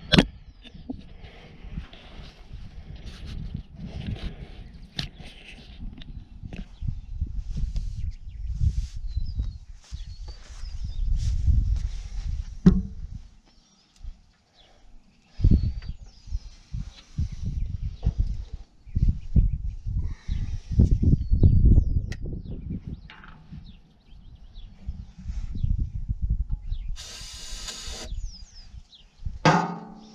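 Gusty wind rumbling on the microphone, with scattered knocks and clicks, and a hiss lasting about a second near the end; no engine is running.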